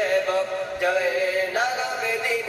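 A man singing, holding long wavering notes that move to a new pitch twice.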